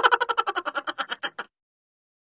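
A short animated end-screen sound effect: a rapid run of about fifteen pulses, some ten a second, fading away and stopping about a second and a half in.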